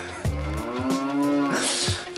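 A cow mooing: one long call, about a second and a half, rising a little and falling away, followed by a brief rushing noise near the end.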